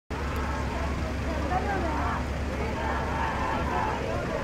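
Crowd of marchers, many voices talking and calling out at once, over a low steady rumble.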